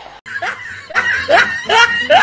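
A person snickering and chuckling under their breath, in three or so short laughs.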